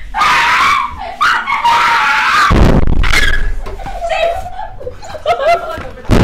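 Boys screaming and wailing in pain while being beaten with a cane, with a heavy thump about halfway through.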